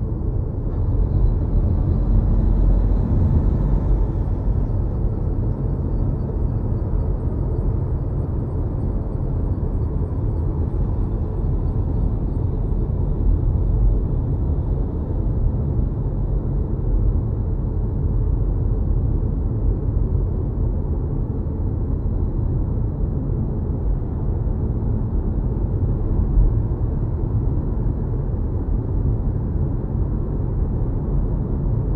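Steady low road-and-tyre rumble heard inside an electric car's cabin while driving, with no engine note. It swells slightly in the first few seconds.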